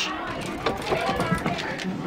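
Muffled voices of several people talking at once on the other side of a closed glass door, with a few short taps mixed in.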